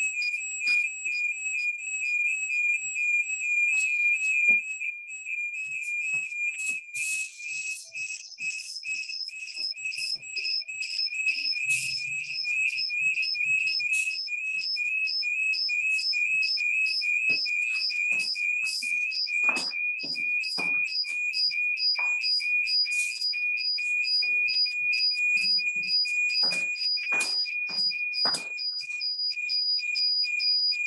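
A continuous high-pitched whistling tone, pulsing quickly, heard through a video call, with scattered short clicks and knocks in the second half.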